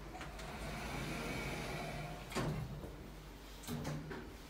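OTIS Gen2 elevator's automatic sliding doors closing, the door operator running steadily until the doors meet with a thud a little past halfway. A second, smaller thud follows near the end.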